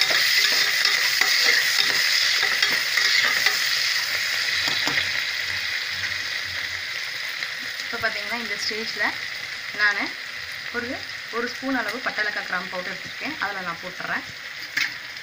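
Onions, green chillies and tomatoes sizzling and bubbling in an aluminium pressure cooker: a steady frying hiss that slowly fades over the stretch.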